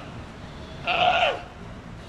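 A Galápagos sea lion calling: one call of about half a second, about a second in, dropping in pitch at its end.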